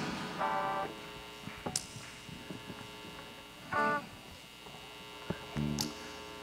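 Steady electrical hum from the church sound system, with scattered faint clicks and two short pitched sounds as the congregation sits down in its chairs.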